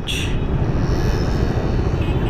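Ride noise on a slow-moving motorcycle: a steady low rumble of wind on the camera microphone mixed with the engine and road noise.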